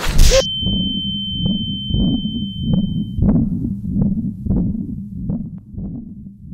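Film sound design for a stunning blow: a hit right at the start, after which the sound cuts out to a high, steady ear-ringing tone lasting about three seconds. Under it run muffled low thumps, about two a second, which carry on after the ringing stops.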